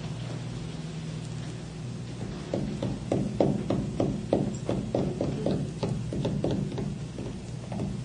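A quick, even series of light taps or knocks, about three or four a second, starting a couple of seconds in and stopping shortly before the end, over a steady low hum.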